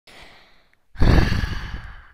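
A person breathing in quietly, then about a second in a long, loud exhaled sigh that fades away.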